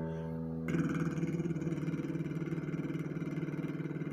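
An acoustic guitar's E chord rings and fades. About a second in, a man starts a lip trill, the buzzing 'vibration' vocal warm-up, held on one steady low note matched to the chord.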